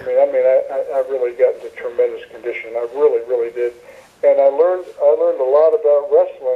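Speech only: a man talking continuously, his voice thin and cut off at the top as over a phone line.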